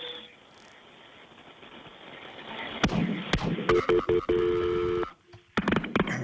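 Telephone audio from a recorded 911 call with thin, phone-line sound: quiet line noise, a few sharp clicks about three seconds in, then two short beeps of a two-pitched telephone tone and a held tone of about a second that cuts off suddenly.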